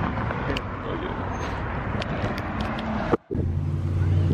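Steady outdoor road-traffic noise with a few faint clicks. About three seconds in it drops out briefly, then a low steady hum follows.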